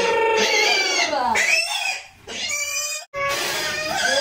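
A woman's voice chanting in long, wavering held tones broken by short pauses: the trance chant of a Hmong shaman performing a ua neeb healing ceremony.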